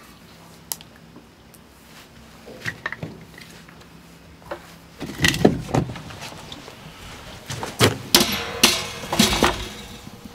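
Split firewood knocking and clattering as pieces are handled and dropped into a Solo Stove stainless-steel fire pit. A few light clicks come first, then louder irregular knocks in the second half.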